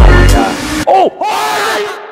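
Music opening with a heavy bass hit, then, from about a second in, a few voices shouting together, their pitch rising and falling.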